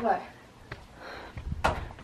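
A single short knock or clack at a wrought-iron and glass front door about one and a half seconds in, with a fainter click before it.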